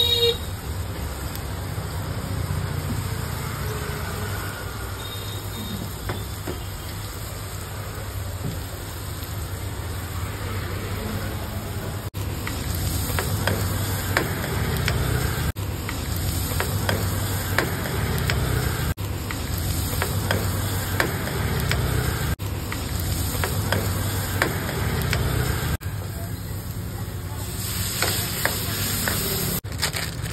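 Vegetables sizzling in a steel kadai over a gas burner, with a steady low hum under it. A steel ladle stirs and scrapes the pan, and from a little under halfway through it clinks against the metal many times.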